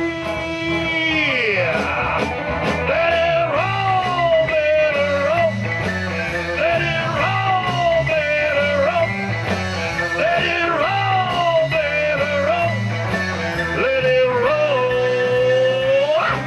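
Live rock band playing: electric guitars, bass and drums under a lead melody of long held notes that bend up and slide down, with a long sustained note near the end.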